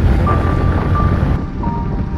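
Low wind and engine rumble from a motorcycle riding along a highway, with background music of long held melody notes playing over it.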